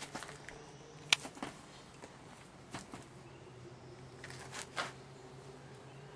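Wooden beehive box being worked open by hand, its frames knocked and shifted: a few sharp clicks and scrapes, the loudest about a second in and a small cluster near the end. A low steady hum runs underneath.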